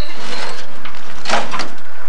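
Upturned metal wheelbarrow being shifted about on gravel: scraping and clanking, with one louder scrape or knock about one and a half seconds in.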